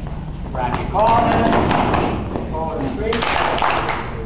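Several people's voices talking at once, with thuds and taps of dancers' feet on the floor.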